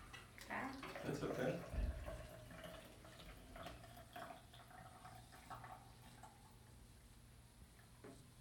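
Water being poured from a container into a small bottle of sand and clay sediment, a faint steady trickle as the bottle fills, with a low thump about two seconds in.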